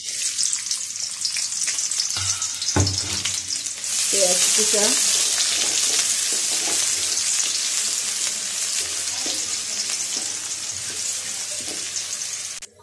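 Sliced onions hitting hot oil in an aluminium karai, then frying with a steady sizzle as a wooden spatula stirs them. The sizzle starts suddenly and grows louder about four seconds in, with a couple of knocks about two to three seconds in.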